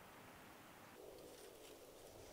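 Near silence: faint outdoor ambience, with a faint steady hum setting in about a second in.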